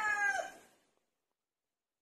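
The tail of a rooster's crow, a drawn-out call that bends down in pitch and stops about half a second in; after it the sound track is dead silent, as at an edit cut.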